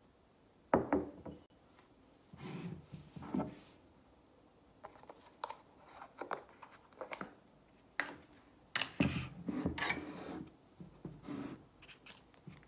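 Handling noises from a plastic margarine tub being picked up and its lid pulled open, with scattered knocks, clicks and short scrapes against the table; the sharpest knock comes about a second in.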